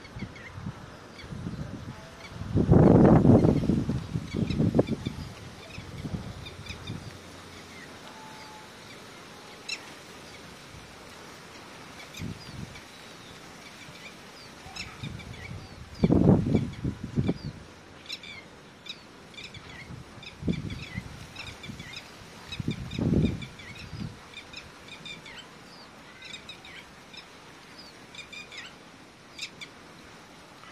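Red-wattled lapwing calls, short sharp high notes repeated many times in the second half, with a few loud low rumbles of noise on the microphone around the start, the middle and later on.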